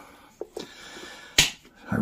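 A plastic one-handed bar clamp being released and lifted off a steel wheel rim: a couple of faint clicks, then one sharp snap a little past halfway.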